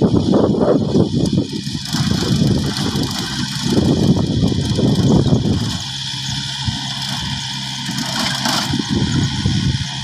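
Compact farm tractor's engine running while it pulls a rear rotary tiller through dry field soil. A rough, uneven noise over the first six seconds settles into a steady engine hum about six seconds in.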